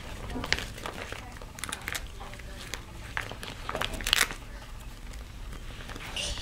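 Clear plastic vinyl pouch crinkling and crackling as it is handled and plastic toy rings are pushed into it, in irregular bursts of crackles, the loudest about four seconds in.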